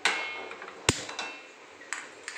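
A stainless steel pan set down on a gas stove's burner grate: a metallic clank with a short ringing. About a second in comes one very sharp click, then lighter ticks.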